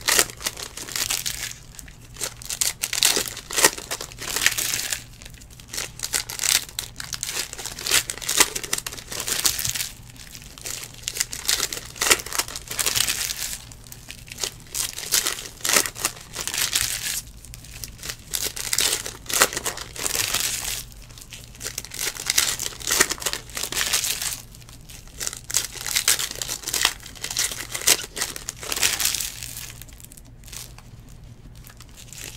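Foil wrappers of Panini Select Basketball trading-card packs being torn open and crinkled by hand, in repeated bursts a second or two long with short pauses between.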